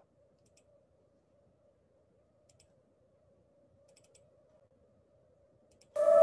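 Faint computer mouse clicks, in quick pairs four times, over a low steady hum of room tone.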